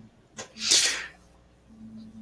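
A person's single short, sharp burst of breath noise, about half a second long, with a faint steady hum under it.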